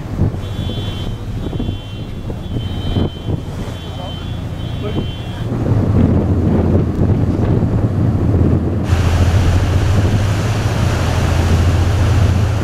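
Wind buffeting the microphone on the open deck of a moving ferry, over a steady low rumble. About nine seconds in, a louder, brighter hiss of wind and sea joins in.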